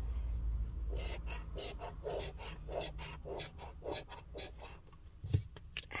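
Scratch-off lottery ticket being scratched: short rasping strokes, about three a second, scraping the coating off the ticket's number spots.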